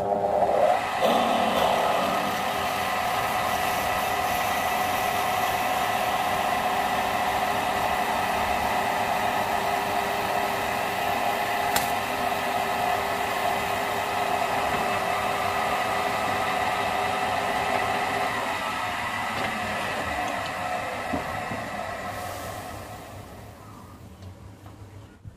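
Assembled wood lathe switching on and running with a steady motor whine while a drill bit in the tailstock chuck bores into the spinning mahogany vase blank. The motor winds down and stops near the end.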